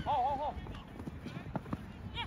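A person's voice giving a high, wavering call for about half a second at the start, then quieter open-air noise from the field.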